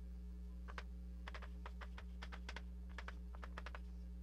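Chalk tapping and scratching on a blackboard as equations are written, in quick irregular clusters of short clicks. It is faint, over a steady low hum.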